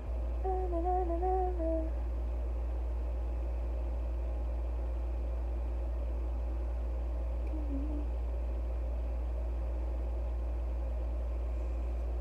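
A woman hums a few wavering notes for about a second and a half near the start, and briefly once more about eight seconds in, over a steady low hum.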